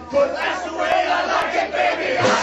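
Punk vocalist shouting through a break in the music, with the drums and guitars stopped, before the band comes back in.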